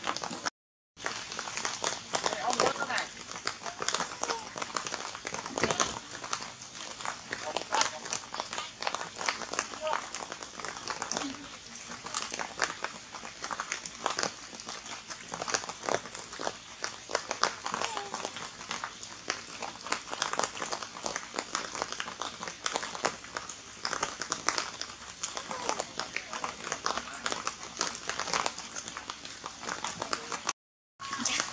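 Indistinct human voices talking in the background, mixed with frequent crinkling and clicking crackles. The sound drops out briefly just after the start.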